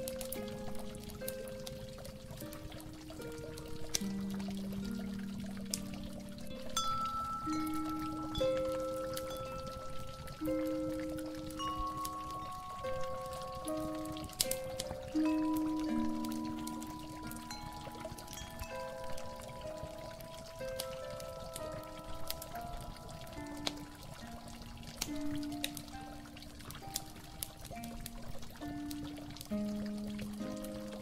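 Water pouring and trickling steadily with scattered drips, under slow, soft instrumental music of long held notes.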